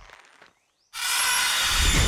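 Horror-trailer sound design: the sound dies away to a brief dead silence, then about a second in a sudden loud hissing noise with a deep low end cuts in and holds.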